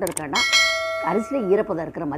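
A bright bell chime, the notification-bell sound effect of a YouTube subscribe-button animation: a short click, then a single ding about a third of a second in that rings out and fades over about a second and a half.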